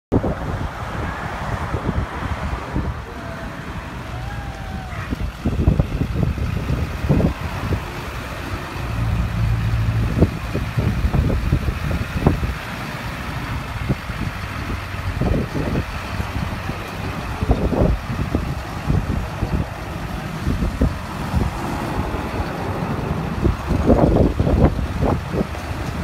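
Road traffic and a pickup truck's engine running close by, with irregular low rumbles and a steadier low hum for a couple of seconds near the middle.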